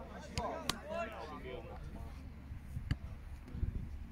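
Distant voices shouting and calling across a rugby pitch, mostly in the first second and a half, over a steady low rumble, with a few sharp clicks.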